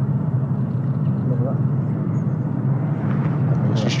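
A steady low hum under even outdoor background noise, with a voice starting near the end.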